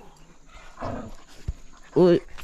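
A dog panting and snuffling faintly about a second in, with one sharp click about a second and a half in.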